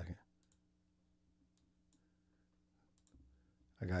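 A few faint, scattered clicks from working a computer to set up a video clip, over a faint steady hum.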